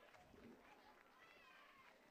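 Near silence, with faint, distant voice-like calls.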